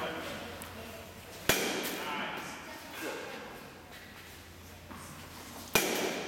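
Youth baseball bat hitting a ball twice, about four seconds apart, each a sharp crack with a short ring in a large hall.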